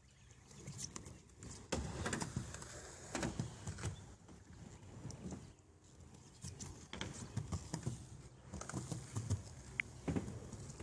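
Skateboard wheels rolling over a wet halfpipe surface, the rumble swelling and fading as the board rides back and forth, with several short knocks and clacks of the board.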